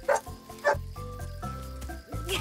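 A cartoon puppy gives two short yips, one at the start and one just over half a second in, over soft background music.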